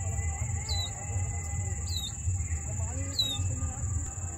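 A bird calling the same short downward-sliding note three times, about every second and a quarter, over a steady high-pitched whine and a low rumble.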